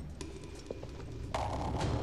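Footsteps of armoured men walking across a wooden floor: a few hollow knocks over a low rumble, with a heavier thud about one and a half seconds in.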